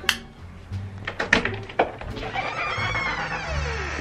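Doorbell being rung: a few sharp clicks, then a ringing tone that rises and falls for about a second and a half, over background music.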